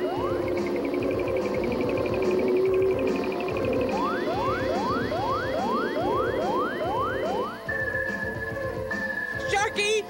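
Cartoon soundtrack music with electronic sound effects: a fast warbling high tone, then a run of about eleven quick rising whistle-like sweeps, about three a second, and finally a held high tone.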